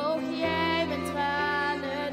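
A slow, tender ballad played live by a small acoustic group of violin, cello and piano: a high melody line held with vibrato over sustained low notes that change about every second or so.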